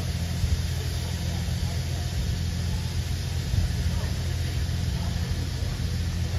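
Steady low rumble of an idling vehicle engine, with faint street background noise.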